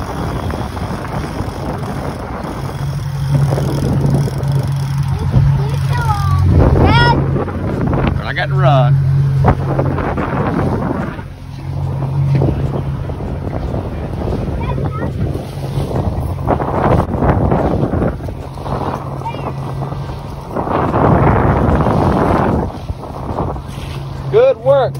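Motorboat engine running steadily underway, a low hum under wind buffeting the microphone and water rushing past the hull. A voice calls out briefly a few times.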